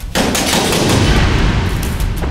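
Someone banging hard on a door, many heavy blows in rapid succession.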